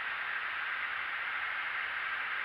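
Steady, even hiss of cockpit background noise, with no distinct events.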